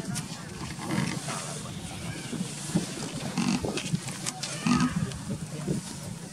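Long-tailed macaques giving short grunts and squeaks off and on.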